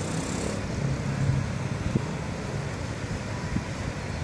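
Steady low rumble of motor vehicle engines and street traffic.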